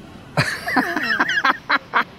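A man laughing: a run of short chuckles that starts about half a second in.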